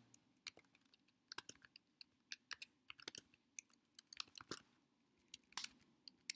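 Typing on a computer keyboard: faint, irregular keystroke clicks coming in short runs with brief pauses between them.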